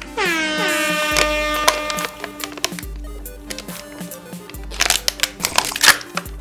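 An air horn sound effect blares just after the start, its pitch dropping sharply and then holding for about two seconds before fading, over background music with a deep bass beat. A run of sharp clicks comes near the end.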